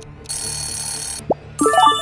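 Quiz countdown timer's alarm-bell sound effect ringing for about a second as time runs out, followed by a short rising chime, over background music.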